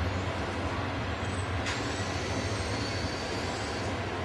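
Steady background noise with a low hum and no speech, and one faint click about two seconds in.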